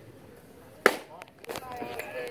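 A baseball bat hitting a pitched ball, one sharp crack with a short ring about a second in, followed by voices of people watching.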